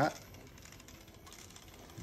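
Bolex 16mm cine camera's clockwork spring motor being wound by its crank handle, with faint, fine ratcheting clicks.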